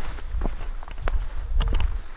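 Footsteps on a dirt forest path, about four steps roughly half a second apart, over a low rumble.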